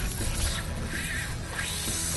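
Fishing reel drag ratcheting as a hooked fish pulls line, over steady wind and sea noise.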